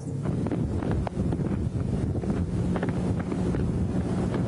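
Wind buffeting an outdoor microphone: a steady low rumble, with a faint steady hum joining about halfway through.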